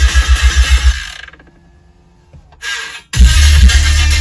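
Electronic dance music played loud on a car stereo with a Sony Xplod bass-tube subwoofer, heard inside the cabin. A fast run of heavy bass hits fades to an almost silent break about a second in, then the deep bass comes back in hard just after three seconds.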